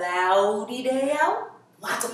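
A woman's voice, drawn out and sing-song, with long gliding notes and a short pause just before the end.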